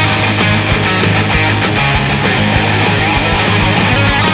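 Rock'n'roll band playing an instrumental passage of their song: electric guitar over bass and drums at a steady, driving beat, with no singing.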